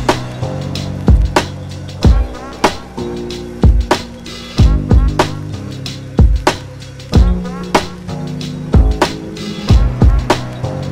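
Dark 90s-style boom bap hip hop instrumental at 94 beats a minute. A hard, evenly repeating kick and snare drum pattern plays over a looping low bass line and sustained melodic notes.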